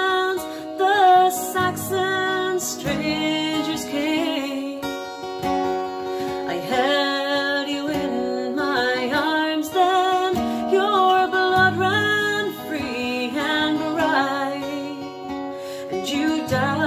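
A woman singing a slow ballad, accompanied by a strummed acoustic guitar.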